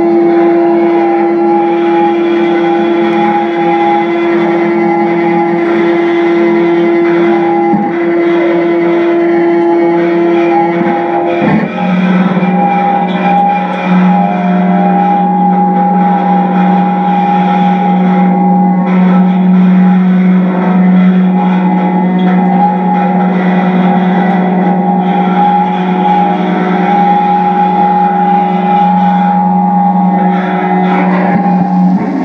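Amplified electric guitar run through a chain of effects pedals, giving a loud, steady electronic drone of held tones. About eleven seconds in it shifts suddenly to a lower droning pitch that holds steady.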